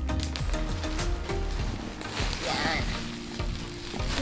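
Plastic bubble wrap being pulled and torn open by hand, crinkling, with a quick run of crackles in the first second or so.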